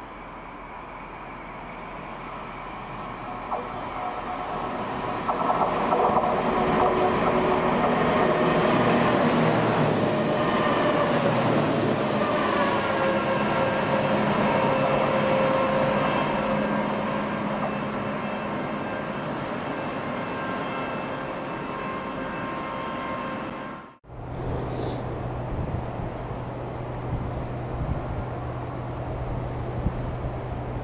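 Freight train approaching and passing: the rumble builds over the first six seconds, stays loud with high ringing, squealing tones from the wheels that slide down in pitch as the wagons pass, then fades away. After a sudden cut about 24 s in, a diesel locomotive's engine gives a steady low hum.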